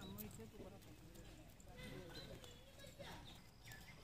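Near silence: faint outdoor ambience with distant, indistinct voices and a few faint high chirps.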